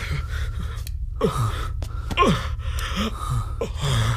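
A man gasping and panting in distress, with short cries that fall in pitch, several times in quick succession, over a steady low hum.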